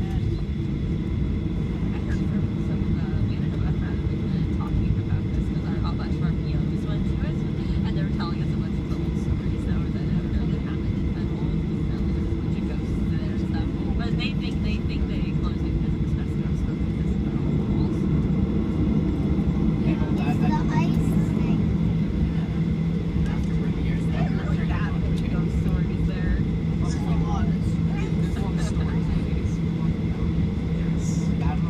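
Cabin noise of a Boeing 737 airliner taxiing: a steady low rumble and engine hum, with the hum growing stronger about two-thirds of the way through. Faint passenger voices murmur underneath.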